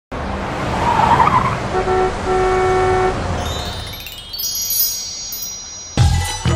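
Road traffic rumble with a car horn honking twice, a short toot then a longer blast, about two seconds in. From about halfway through, a shimmering chime sound rises in as the traffic noise fades.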